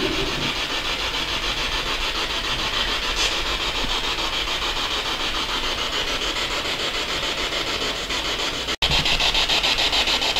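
Ghost-box radio sweep through a small speaker: a steady hiss of static chopped into rapid, even pulses as the device scans. It cuts out for an instant near the end and comes back slightly louder.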